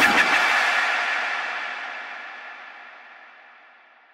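A dubstep track stops dead with its bass cut off, leaving a reverb tail: a hissy wash with no beat that fades away over about four seconds.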